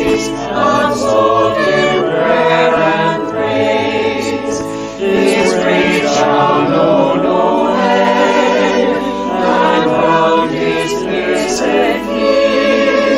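A mixed virtual choir of men and women singing a hymn together, their separately recorded voices mixed into one, with organ accompaniment. The singing carries on with a short break between phrases about five seconds in.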